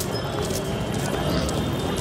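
Busy outdoor crowd ambience: a steady low rumble with faint distant voices and scattered footsteps on pavement.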